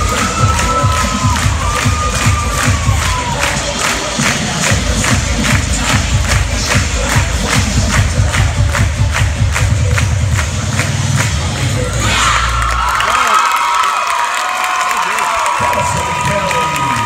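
Cheerleading routine music with a fast, steady pounding beat, with a crowd cheering and screaming over it. About twelve seconds in the music stops and the crowd's cheering and screaming swells.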